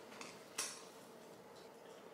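A faint crunch about half a second in as a toasted tortilla wrap is bitten into, after a fainter tick.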